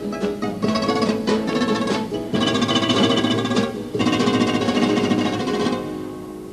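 Instrumental opening of a Cádiz carnival comparsa: Spanish guitars playing a strummed and plucked introduction. The music drops lower near the end.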